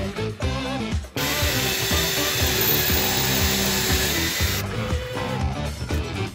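Power drill driving a screw into a wooden board, running steadily for about three and a half seconds from about a second in, over background music.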